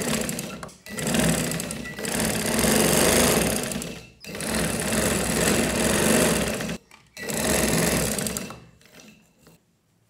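Domestic sewing machine stitching fabric, running in four stretches of a few seconds each with brief stops between them.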